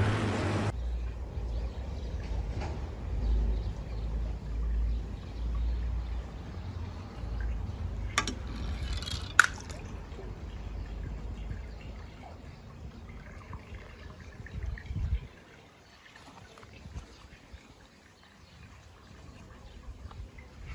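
Pool water moving and trickling, over a low steady rumble that stops about fifteen seconds in. Two sharp knocks, about eight and nine and a half seconds in.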